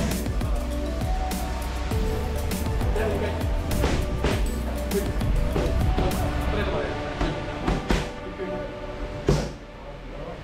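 Music plays throughout, with sharp, irregular smacks of punches and kicks landing on a trainer's focus mitts and kick pads, a couple of hits every second or so, the loudest one near the end.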